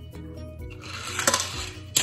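Small toy car rolling down a wooden plank ramp: a rolling rumble builds from under a second in, with sharp knocks a little past halfway and again near the end as it runs off onto the table. Background music plays throughout.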